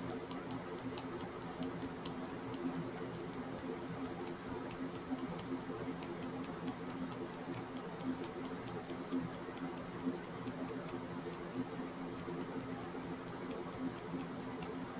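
Light, quick ticking of a small plastic funnel and mica jar tapping against the neck of a glass nail polish bottle as mica powder is tapped in; the ticks come in irregular runs, busiest around halfway through, over a steady low hum.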